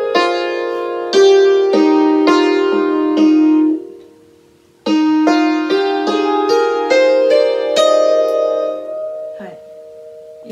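Hammered dulcimer played note by note through an E-flat major scale, each hammer stroke ringing on under the next. The run breaks off just before four seconds in and the ringing dies away. About a second later the scale starts again and climbs step by step, then is left to ring out.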